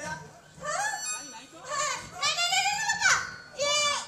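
A man's exaggerated high-pitched voice over a stage microphone and loudspeakers: about four drawn-out cries with swooping pitch, one sliding sharply down near the end, rather than ordinary speech.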